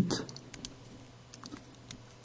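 Stylus tip tapping and ticking on a smartphone's glass touchscreen while writing shorthand strokes: about half a dozen faint, irregular clicks.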